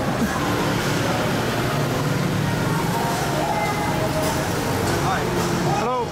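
Busy city street at night: a steady rumble of traffic with background voices, and a man's voice close by near the end.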